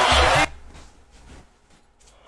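A man's excited wordless yell cuts off about half a second in, with a low thump under its end. Then it goes quiet.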